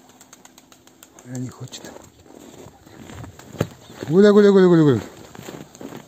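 A man calling his pigeons with a rapid, warbling 'гуля-гуля-гуля' once, about four seconds in, after a short low grunt near the start and a sharp click just before the call.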